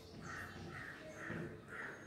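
A crow cawing four times, about two caws a second, faint in the background.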